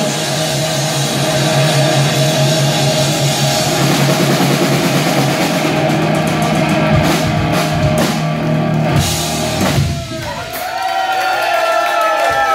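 Live three-piece rock band playing loud: distorted electric guitar, bass and a drum kit. In the second half the drums and cymbals hit hard, and about ten seconds in the full band drops away, leaving guitar notes that waver and slide in pitch.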